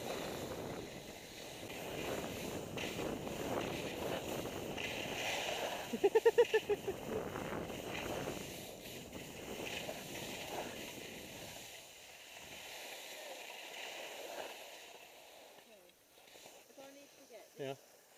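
Skis sliding and scraping over snow with wind on the microphone during a downhill run, and a short burst of laughter about six seconds in. The noise drops away after about twelve seconds as the skier slows to a stop, and a few faint voices come near the end.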